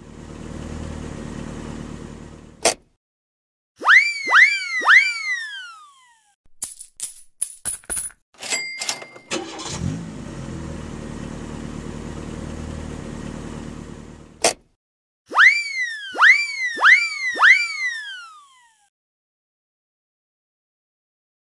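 Cartoon sound effects: a toy-like car engine hum that ends in a click, then three quick falling springy "boing" tones. A burst of clicks with a short electronic beep like a checkout scanner follows, then the engine hum again, another click, and four more falling boings.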